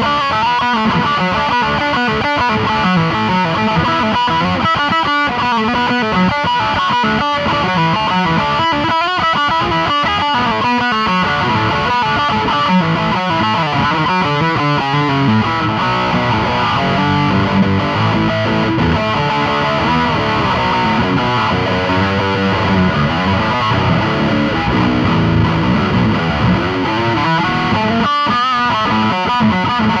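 Schecter 8-string electric guitar played through a high-gain distorted amplifier, an unbroken stream of changing notes with heavy low notes.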